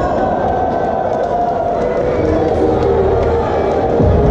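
Music playing over the noise of a crowd cheering and shouting, steady and loud throughout.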